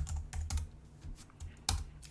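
Computer keyboard being typed on: a quick run of separate keystroke clicks, the loudest one near the end.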